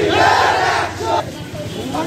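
A crowd of protest marchers shouting a slogan together, loudest in the first second and then dying away.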